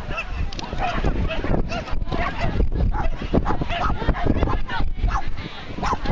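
A dog barking at intervals, mixed with voices calling out, including the handler urging the dog on, over a steady low rumble.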